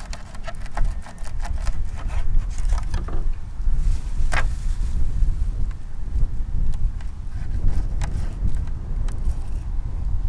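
A steady low rumble of wind on the microphone, over knives cutting and scraping fish on a plastic cleaning board: a run of short clicks and scrapes in the first three seconds, one sharp click about four seconds in, and scattered clicks after.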